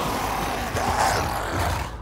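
Sound effects of a Kikimora, a swamp monster, thrashing through water: a dense wash of splashing and churning with rough growling cries swelling near the start and again about a second in.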